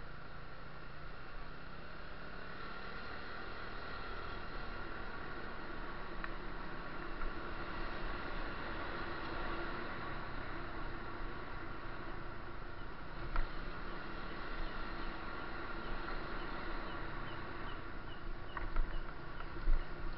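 Steady outdoor night ambience: a constant drone of noise with faint steady tones, a few soft knocks, and near the end a run of short, quick high chirps, about three a second.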